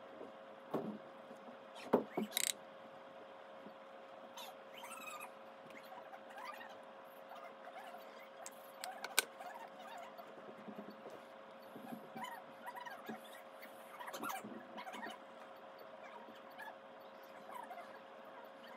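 Scattered clicks, taps and soft rustles of makeup products and a brush being handled during contouring, with a few sharper clicks about two seconds in, over a faint steady hum.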